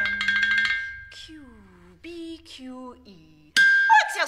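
Rapid drumstick strokes on a snare drum over a steady high ringing tone, stopping within the first second. Then a woman's voice makes several short downward-sliding vocal glides. Near the end a loud high ringing tone is struck again.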